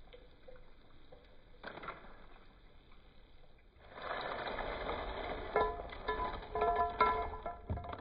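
Crisp fried rice-flour crackers tipped from a wire strainer onto a ceramic plate, starting about four seconds in: a dry, crackly clatter, with short ringing clinks from the plate as pieces land. Before that there is only a faint low background.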